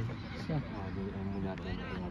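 Men's voices calling and shouting out, one call held for about a second in the middle.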